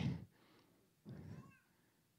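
A short, faint, high-pitched cry-like vocal sound with a wavering pitch, about a second in, following the end of a spoken phrase.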